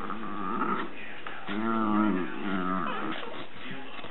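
Dachshund growling in several drawn-out, rising and falling grumbles, warning another dog off its bed.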